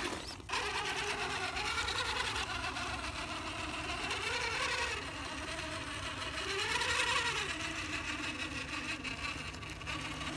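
Redcat Gen8 Axe RC crawler's electric motor and gear drivetrain whining as it creeps up steep rock under load. The pitch swells and falls back with the throttle, about halfway through and again a little later.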